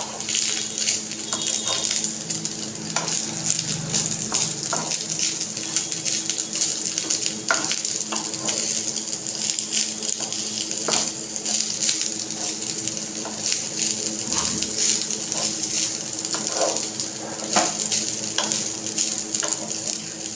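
Rice frying in a nonstick kadhai with a steady sizzle, while a wooden spatula stirs it, scraping and tapping against the pan now and then.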